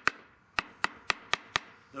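A brass hammer rapping on locking pliers clamped to an aluminium casting pattern, to loosen the pattern from the hardened sodium silicate sand before it is pulled. There is one sharp metallic tap, then after a pause a quick run of five taps at about four a second.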